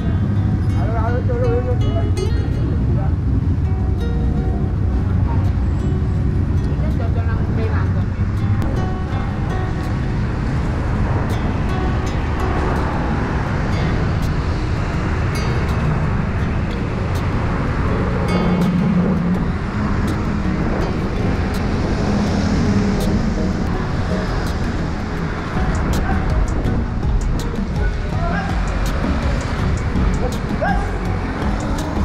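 Steady wind rumble on the microphone of a camera riding along on a bicycle, mixed with city street traffic.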